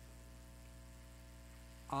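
Faint, steady low electrical mains hum with nothing else over it; a man's speaking voice begins right at the end.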